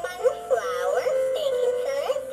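Animated plush chef bear toy singing a song with music through its built-in speaker, in a high-pitched synthetic voice.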